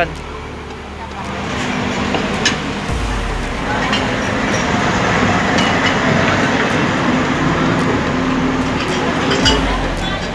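Busy roadside eatery: indistinct background voices and steady road traffic noise, with a few sharp clinks of plates and utensils.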